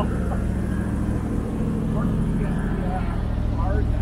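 Steady low rumble of an idling vehicle engine, with faint scraps of conversation over it.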